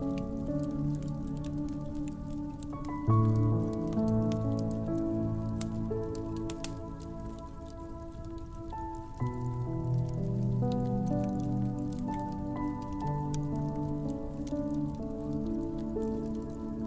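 Slow piano music with held chords, a new chord struck about 3 seconds in and another about 9 seconds in, over the continual small crackles and pops of a wood fire.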